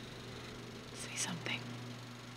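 A woman's short breathy gasp in two parts, about a second in, as she starts awake from a dream, over a steady low hum.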